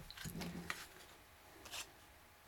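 A few faint rustles and clicks of oracle cards being picked up and handled on a cloth-covered table.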